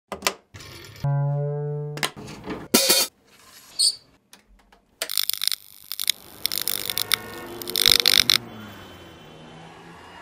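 A guitar cable plugged into a Goodsell amplifier's input jack: sharp clicks and pops through the amp, then a held note for about a second. More sharp hits follow, and from about halfway in, a cluster of loud noisy bursts lasts about three seconds before it settles to a low steady hum.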